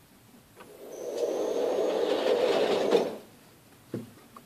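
Motorized shooting-range target carrier running along its overhead track for about two seconds with a thin high whine, then stopping abruptly.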